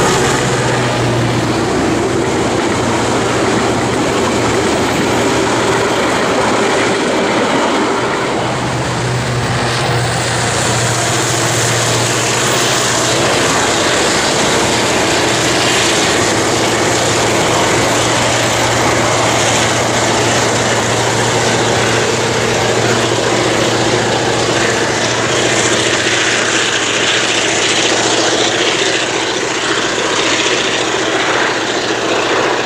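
V8 diesel-electric locomotive DBR 1254 running under load as it hauls a train of vintage carriages, a steady engine note over the rumble of the carriages' wheels on the rails. About nine seconds in, the sound changes to the engine working as the train climbs away on a grade.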